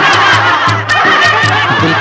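A crowd laughing together over the song's band, with regular drum beats underneath. A male singer comes back in on the first word of the refrain at the very end.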